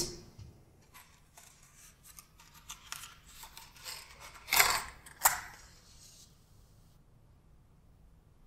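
Small clicks and rustles of a matchbox being handled and opened, then a match struck on the box: two quick scrapes less than a second apart as it catches, followed by a faint hiss.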